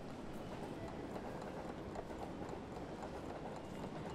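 Countdown-timer sound effect: a steady run of quick clicks or knocks at an even level while the answer time runs out.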